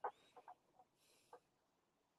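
Near silence: room tone with a few faint, very short sounds spread through it.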